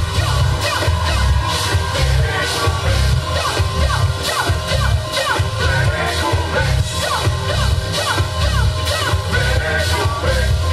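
Live electro-Latin band playing a techno and merecumbe fusion: a pulsing synth bass and drum-kit beat, with short falling pitch sweeps repeating over the top.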